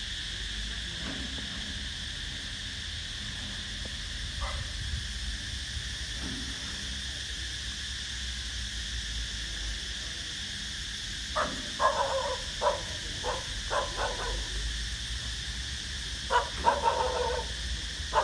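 A dog barking in two short runs of barks, the first about two-thirds of the way in and the second near the end, over a steady high insect drone and low wind rumble on the microphone.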